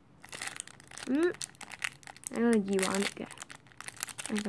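Thin clear plastic bag crinkling as hands turn and open it, a run of small crackles.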